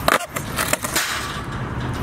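Skateboard hitting flat concrete with a few sharp clacks in the first second, then its wheels rolling on the concrete, as a backside 360 is spun out and the board comes down without the skater on it.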